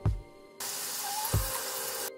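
Shower water spraying and running over hair as the rice water is rinsed out, a steady hiss that starts about half a second in.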